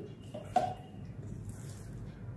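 Quiet handling of raw minced chicken in a stainless steel mesh strainer, with one brief knock about half a second in, over a faint steady low hum.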